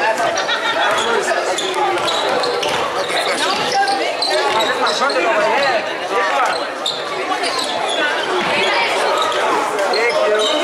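Basketball being dribbled on a hardwood gym floor during play, under a steady din of many overlapping voices from spectators and players echoing in the gymnasium.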